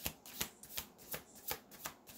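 A deck of tarot cards being shuffled by hand: short card-on-card swishes, about three a second.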